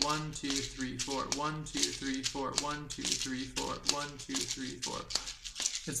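Asalato (kashaka), a pair of seed-filled shakers joined by a cord, shaken and clicked in a fast repeating rhythm. This is the three-beat flip-flop trick, with an extra shake and a grab added to fill out an eight-beat bar.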